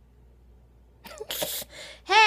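A woman sneezes once, a sudden sharp burst about a second in.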